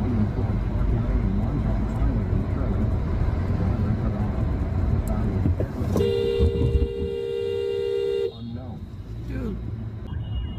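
Car horn held for about two seconds, a steady two-tone blare that cuts off suddenly, over the low rumble of a car driving.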